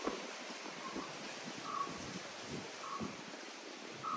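A bird giving a short call about once a second, over faint rustling of leaves and plants.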